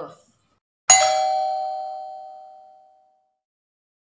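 A single bell-like chime struck once about a second in, ringing out and fading away over about two seconds. It is an edited transition sound effect marking the change to the next section.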